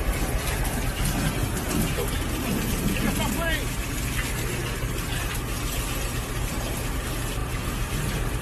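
A jet of water from a spray wand blasting the inside of a car's cabin: a steady, unbroken hiss.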